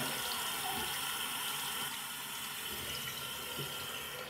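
Water running steadily from a bathroom sink faucet, the stream falling onto a small squirt-ring prank toy held under it to fill it.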